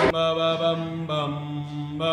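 A man's voice chanting in long held notes, changing pitch about a second in.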